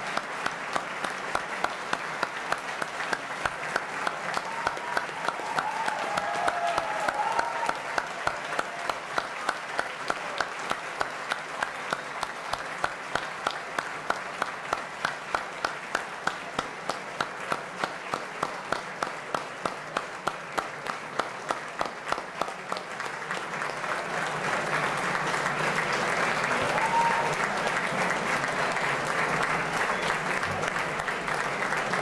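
Audience applauding in rhythmic unison, about three claps a second. After some twenty seconds the beat dissolves into louder, ordinary scattered applause.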